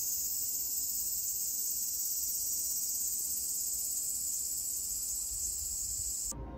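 Cicadas in the trees, a steady, dense high-pitched insect drone.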